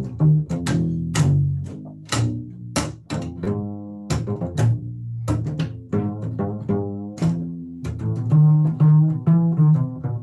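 Solo upright bass played pizzicato, a run of plucked notes with sharp attacks, a few left ringing longer about three to four seconds in.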